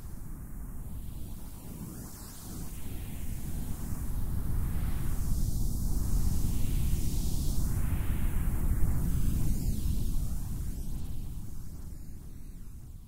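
Noise-ambient texture: a deep rumble that swells in over the first few seconds, with a hiss above it sweeping slowly up and down in waves, easing off near the end.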